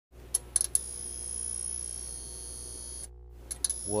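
Edited-in intro sound effect: a few sharp clicks, then a steady high-pitched whine that cuts off suddenly about three seconds in. After a short gap the clicks and whine come back as a man starts speaking near the end.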